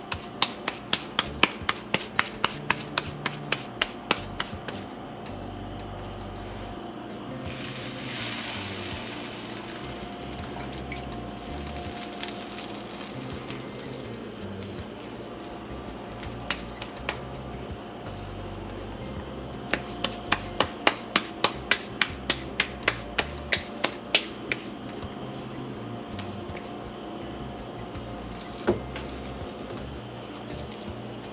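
Hands patting rice-flour pupusa dough between the palms to flatten it: quick, even slaps about four to five a second through the first four seconds, and again for about five seconds past the middle. A brief hiss comes about eight seconds in, and steady background music runs under it all.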